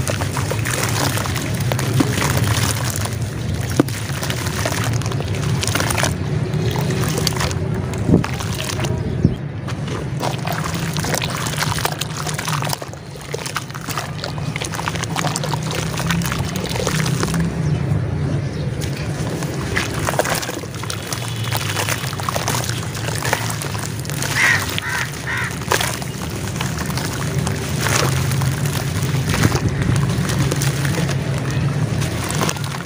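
Hands squeezing and crumbling soaked red dirt chunks in a basin of water: repeated splashing, sloshing and wet squelching as clumps break apart and drop into the muddy water.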